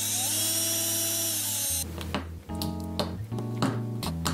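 Cordless drill whirring as it bores a small hole through a fingerboard deck, running steadily and then stopping a little under two seconds in. Background music with a beat plays throughout.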